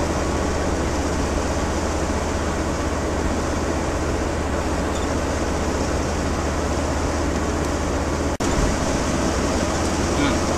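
Steady engine and road noise inside the cabin of a Volkswagen T4 camper van on the move, with a low hum underneath. About eight seconds in the sound cuts out for an instant, then carries on.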